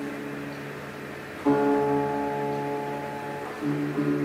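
Solo classical guitar, an 1828 Pierre-René Lacôte, playing slow ringing notes in flute-like harmonics (notes flûtées). A louder, brighter note is struck about a second and a half in, and another just before the end.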